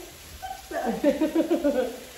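A woman laughing: a burst of rapid, repeated laughter starting about two-thirds of a second in, after a brief lull.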